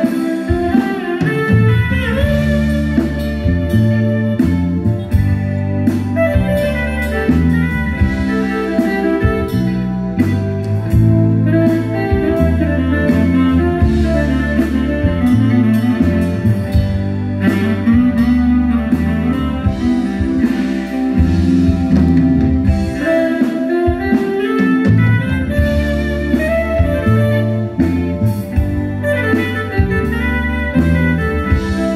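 Amplified live band music with no singing: an instrumental passage with a sustained melodic lead over keyboard and a heavy, steady low end.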